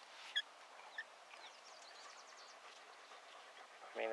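Birds calling faintly over quiet open-air ambience: a sharp high chirp about a third of a second in, another about a second in, then a quick run of short high falling notes around the middle.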